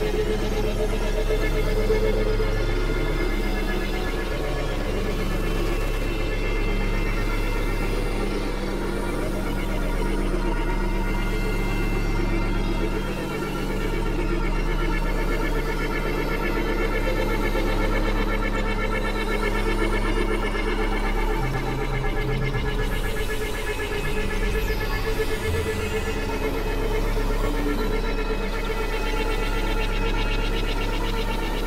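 Experimental synthesizer drone music: a steady deep bass drone under layered sustained tones, with low notes that change every few seconds.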